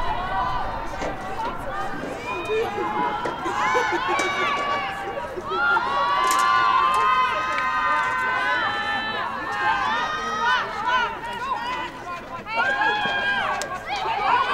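Several women's voices shouting calls to one another across a lacrosse field, overlapping, many of them drawn out. The calls get busiest in the middle of the stretch and again near the end.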